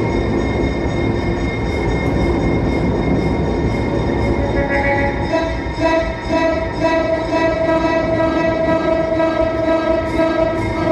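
Electronically processed recordings of a commuter train: a dense, continuous rumble with held steady tones layered over it. The held tones grow stronger about five seconds in.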